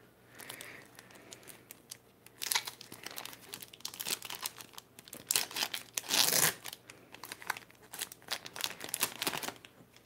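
A foil Pokémon card booster pack being torn open and crinkled by hand: a run of irregular crackling rustles, starting a couple of seconds in, with the loudest tear about six seconds in.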